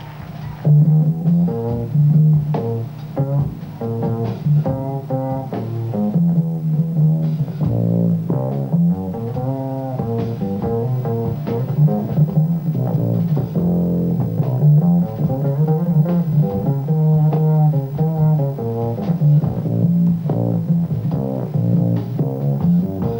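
Upright double bass played pizzicato in a live jazz trio, a busy line of plucked notes, with drums and cymbals played lightly behind it.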